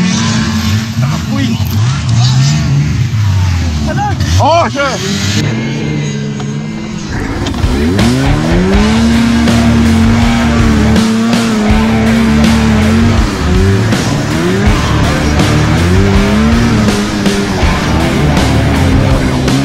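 Vintage two-stroke racing snowmobile engine heard from on board, revving up and down with the throttle. It drops off briefly a third of the way in, then holds a high, steady pitch for several seconds before easing and climbing again.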